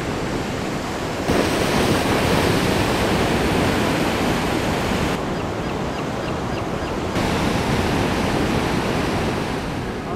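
Ocean surf: a steady rush of waves breaking and washing in. The sound changes abruptly about a second in and again around five and seven seconds, as separate recordings are cut together.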